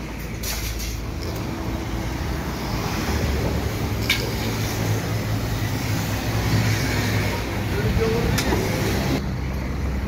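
Road traffic: a steady low rumble of heavy vehicle engines, growing louder from about three seconds in.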